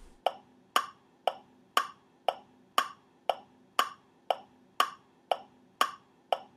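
Steady mechanical ticking like a clock, about two even ticks a second.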